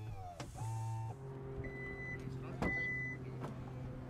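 Steady low electric hum inside a car cabin, with a few sharp clicks and two short high beeps in the middle, after a brief falling whirr at the start.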